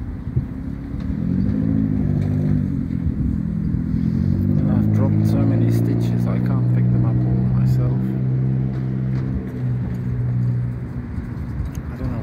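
A motor vehicle's engine running close by with a steady low drone. Its pitch rises briefly about a second in, then holds steady and stops near the end.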